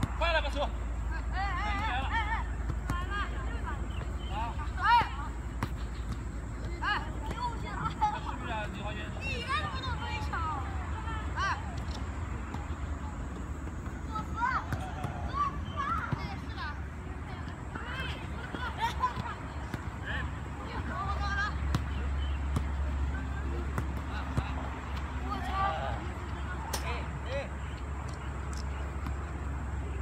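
High-pitched young voices calling and shouting during a football passing drill, scattered throughout, over a steady low rumble, with a few short sharp knocks.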